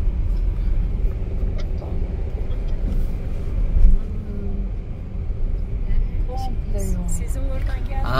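Inside a moving Fiat Egea Cross 1.6 Multijet diesel, a steady low rumble of engine and road noise, with faint voices under it.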